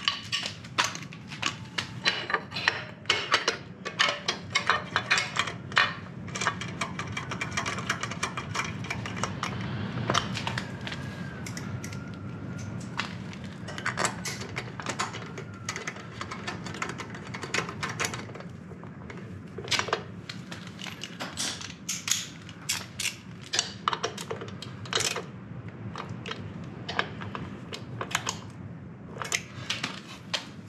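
Hand tools clicking and clinking on a motorcycle engine as a spark plug is fitted into the cylinder head of a Yamaha Virago 535 V-twin. There are many short, irregular metal clicks, coming thicker in the second half.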